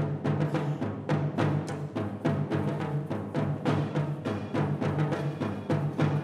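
Concert band playing an African-style arrangement of a Christmas melody, with several percussion instruments keeping a steady, repeating drum groove under sustained low wind notes.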